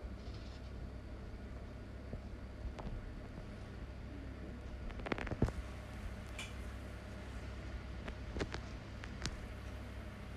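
Hands pulling apart and gathering strands of shredded pastry dough, heard as a few faint soft clicks and crackles about halfway through and again near the end, over a steady low hum.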